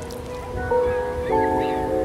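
Electronic keyboard music: sustained chords that change twice.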